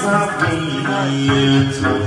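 Hát văn (chầu văn) ritual singing: a man's voice, amplified through a microphone, holds a long bending note over a plucked đàn nguyệt (moon lute).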